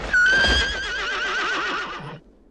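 A horse whinnying: one long call that starts loud and steady, then quavers more and more in pitch until it breaks off near the end.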